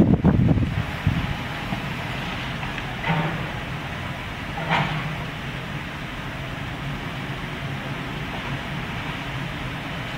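Excavator's diesel engine running steadily during demolition of a wooden house, with rough low rumbling in the first second and two brief higher-pitched squeals or creaks about three and five seconds in.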